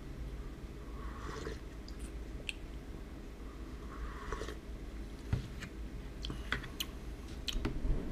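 A person slurping ramen broth straight from a plastic bowl: two short, quiet slurps, about a second in and around four seconds. Near the end come a few light clicks and knocks.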